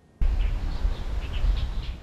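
Outdoor ambience that cuts in just after the start: a steady low rumble with faint, scattered bird chirps above it.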